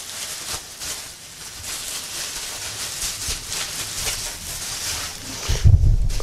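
Plastic bubble wrap crinkling and rustling as it is handled, with many small crackles, and a dull low thump near the end.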